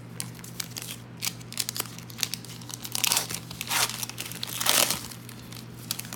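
Foil wrapper of an Upper Deck hockey card pack crinkling and tearing as it is ripped open by hand. There are irregular crackles throughout, with louder rustling bursts about three seconds in and again near five seconds.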